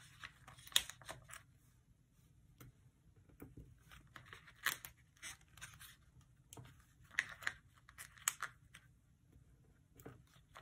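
Small paper stickers being peeled from a sticker sheet and pressed onto planner pages: soft, short peeling and paper-rustling sounds scattered irregularly, the clearest about five seconds in and a cluster around seven to eight seconds.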